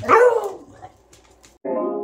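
A beagle barks once: a single loud bark, falling in pitch, lasting about half a second. Near the end, keyboard music starts.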